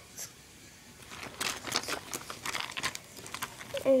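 Handling noise: a dense run of small crinkles and clicks lasting about two seconds, as plastic school supplies are handled close to the microphone. A voice starts right at the end.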